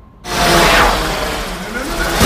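Sudden loud sci-fi sound effect of drones swooping in: a rushing whoosh with gliding tones that starts about a quarter of a second in and keeps going.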